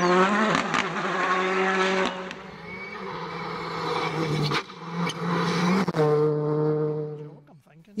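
Rally car engines running hard at high, near-steady revs as cars speed along the stage, heard in several separate stretches with short breaks between them; the sound falls away just before the end.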